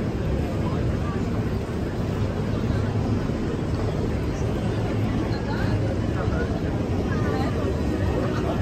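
Busy city street ambience: a steady low traffic rumble with passers-by talking.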